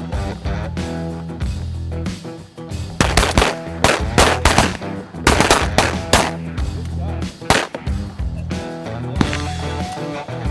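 A volley of shotgun fire from several duck hunters, about a dozen shots in quick succession starting about three seconds in and lasting some four seconds, over background music.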